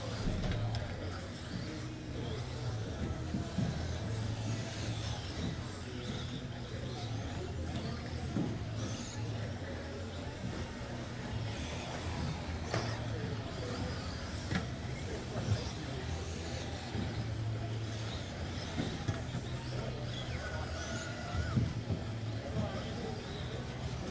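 Electric RC racing buggies running laps on an indoor track, with a few sharp knocks over a steady low hum and background chatter.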